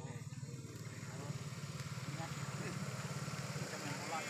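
A small engine idling steadily with a low, even pulse, with faint voices in the distance.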